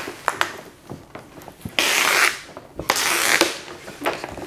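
Backing liner being peeled off a vinyl wrap film, crinkling and crackling with scattered clicks, and a louder rasp about two seconds in that lasts half a second, with a weaker one shortly after.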